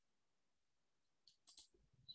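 Near silence, broken by a few faint clicks about a second and a half in.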